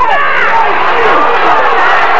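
Spectator crowd cheering and shouting, many voices at once.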